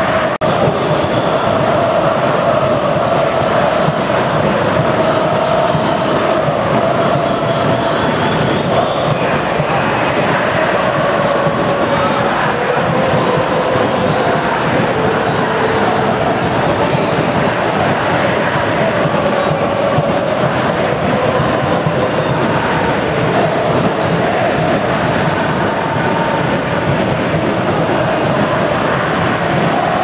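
Large football-stadium crowd chanting and singing together, a steady, dense roar of many voices with drawn-out sung notes that rise and fall slightly.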